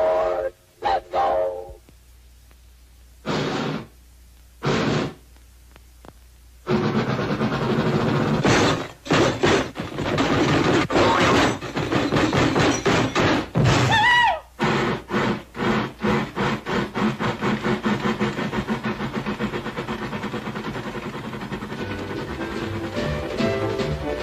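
Cartoon steam-train sound effects mixed with orchestral music. A train whistle tone fades out at the start and two short steam puffs follow. Then a fast, even chugging rhythm runs under the music, with a short sliding whistle about halfway through.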